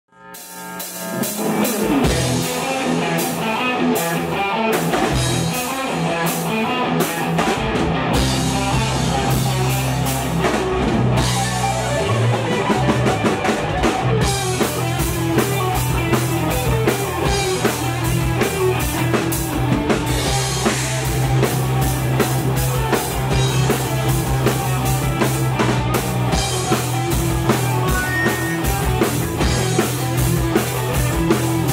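Power metal band playing live, with electric guitars, bass, keyboard and a drum kit, in an instrumental passage without vocals. It fades in from silence over the first two seconds.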